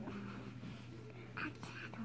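A pause between spoken sentences: a faint, low voice over a steady low hum.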